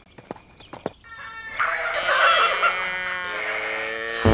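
A sheep bleating: one long bleat starting about a second in, after a few faint clicks.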